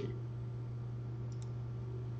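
A faint computer-mouse click or two about halfway through, over a steady low hum.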